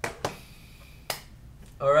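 A few sharp clicks of small plastic makeup cases being handled on a table: two in quick succession at the start and one about a second in. A voice starts near the end.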